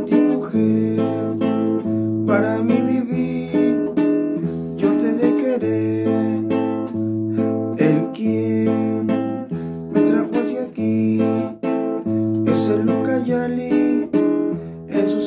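Nylon-string classical guitar playing a Peruvian vals accompaniment in A minor and E seventh: alternating bass notes answered by strummed chords in waltz time, an instrumental passage with no singing.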